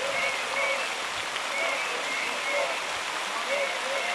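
Fountain jets spraying and splashing into a pool, a steady rush of water, with distant voices over it.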